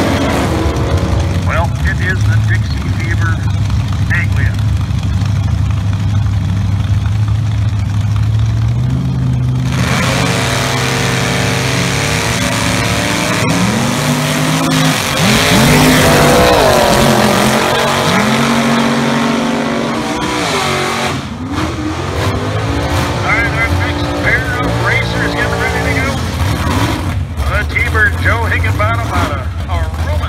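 Nostalgia gasser drag cars' engines revving and running hard down the strip, the engine pitch sweeping up and down.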